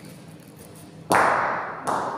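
Bocce balls colliding: a thrown ball strikes a resting ball with a loud, sharp clack about a second in that rings on in the hall, followed by a second, lighter knock just before the end.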